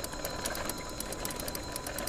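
Liberty electric trike rolling along a paved road: a steady faint motor whine under a rapid, even ticking from the drivetrain.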